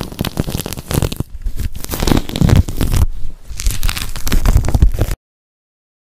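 Close-up ASMR crackling and tearing, dubbed in to stand for a leopard gecko's shed skin being peeled off. It is a dense run of small crackles and rips that cuts off abruptly about five seconds in.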